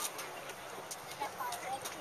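Chatter of several people's voices, with scattered sharp clicks or knocks.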